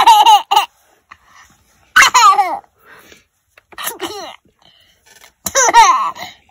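Baby laughing in short giggling bursts, about four of them roughly two seconds apart.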